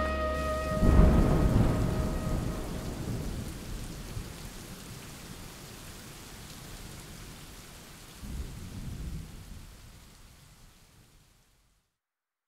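Thunderstorm: a loud roll of thunder about a second in over steady rain, a second, quieter rumble a little past eight seconds, then the storm fades out.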